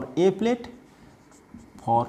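A marker writing on a whiteboard, with a man's voice in short bursts in the first half-second and again at the end.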